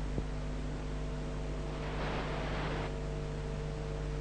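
Steady electrical mains hum with several tones over an even hiss, the background noise of an old video transfer's soundtrack; a faint swell of hiss lasts about a second near the middle.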